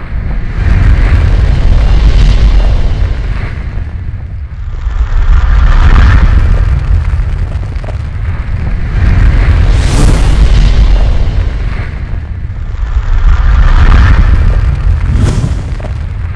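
Cinematic intro sound design: a deep booming rumble that swells and fades about every four seconds, with a sharp hit about ten seconds in and another near the end.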